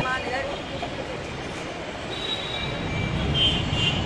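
City street traffic noise: a low, steady rumble with a couple of brief, faint high-pitched tones in the second half.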